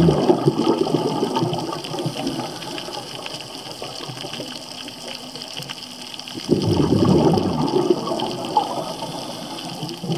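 Scuba regulator exhaust bubbles heard underwater: a diver's exhaled breath bubbling out in two bursts, one fading over the first second or so and another starting about six and a half seconds in and lasting about two seconds, over a quieter steady hiss.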